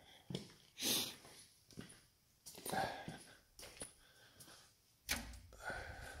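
Quiet, scattered handling noises while shop lights are being switched on: a few short noisy sounds, then a sharper click-like onset with a low rumble about five seconds in.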